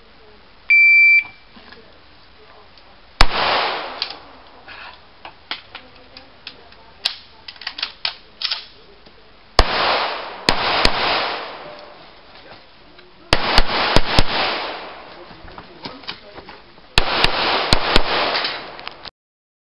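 An electronic shot timer gives one short, high start beep. Pistol shots follow, each with an echoing tail: a single shot about three seconds in, then quick strings of three, four and three shots, with small handling clicks in between.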